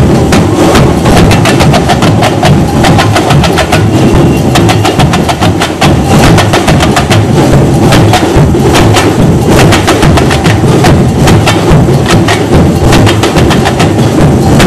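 Samba drumming ensemble playing a fast, dense rhythm: sharp high strikes from hand-held frame drums over a steady low bass-drum pulse.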